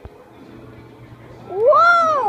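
A toddler's whiny cry: one loud, drawn-out wail that rises and then falls in pitch, starting about one and a half seconds in.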